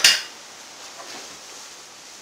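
A single sharp metallic clink as the body settles onto a weight bench under a plate-loaded press machine, followed by a brief rush of rustling and then a steady faint hiss.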